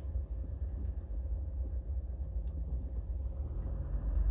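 Low, steady road and engine rumble inside a moving car's cabin, with a faint click about two and a half seconds in.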